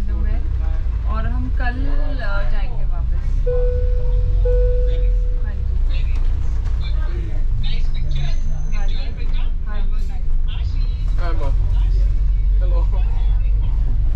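Steady low rumble of an open-top double-decker bus driving through town, heard from the upper deck with people talking over it. About four seconds in, a steady tone sounds twice in quick succession.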